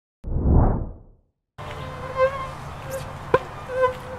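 A short low whoosh, then about a second and a half in, the wavering whining buzz of mosquitoes in flight, with one sharp click near the end.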